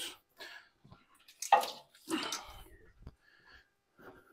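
Engine wiring harness being set down on the floor: two short rustles with a light clatter of plastic connectors, about a second and a half and two seconds in.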